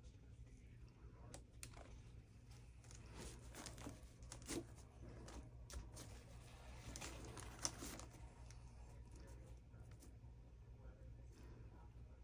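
Faint crinkling and rustling of vinyl-gloved hands handling glitter and a wipe, with a few light clicks and taps, the sharpest about four and a half and seven and a half seconds in, over a steady low hum.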